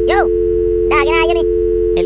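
A steady, unbroken two-tone telephone dial tone, with two short bits of a man's voice over it, one at the start and a longer one about a second in.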